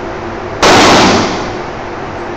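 A single loud gunshot about half a second in, its echo off the indoor range walls dying away over the next half second.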